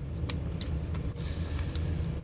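A steady low background hum with a few faint light clicks.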